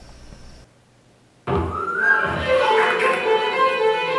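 A string ensemble with violins and a double bass playing, starting about a second and a half in, played back from the editing timeline over a small desktop speaker. Three synchronized copies of the same recording are playing at once with no audible echo, the sign that the tracks are lined up.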